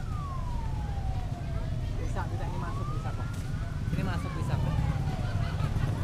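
An emergency vehicle siren wailing slowly up and down: it falls from its high point at the start to its low point about two seconds in, climbs back to the top near four seconds and falls again toward the end. Underneath runs a steady low rumble of engines and traffic.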